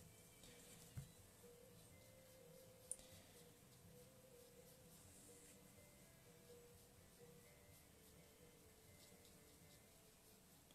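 Near silence: room tone with a faint steady hum and two faint clicks, about a second in and near three seconds in.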